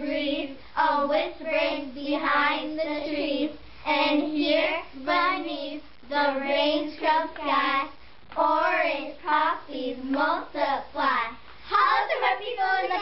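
A group of young girls singing a poem together in unison, voices only, with no instrumental backing.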